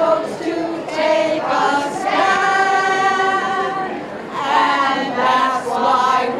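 A small group of women singing together unaccompanied, led by a conductor, with several long held notes.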